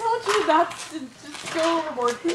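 Indistinct speech from a voice close to the microphone, with no words that can be made out.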